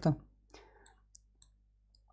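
A few faint, quick computer mouse clicks, spread over the first second and a half after a word ends, over a low steady hum.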